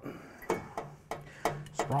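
A few short, sharp metallic knocks and light scraping from a loose sheet-metal plate being shifted by hand into place against a car's steel body panel.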